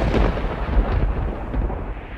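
Thunder sound effect: a long rolling rumble of thunder, loudest at first and fading away.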